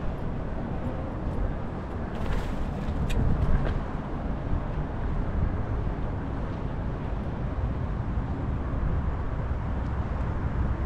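Steady low outdoor rumble of wind on the microphone and distant city traffic, with a few faint clicks about two to four seconds in.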